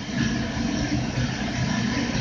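Steady machinery hum and rush in a boiler room, from a gas-fired boiler running.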